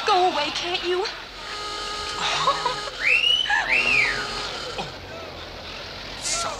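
Voices in the first second, then a two-part wolf whistle, a high rising-and-falling glide twice, about three seconds in.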